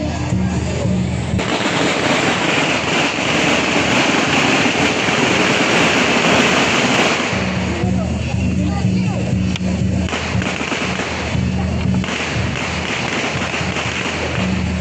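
A string of firecrackers crackling rapidly for about six seconds, starting about a second and a half in, over festival music.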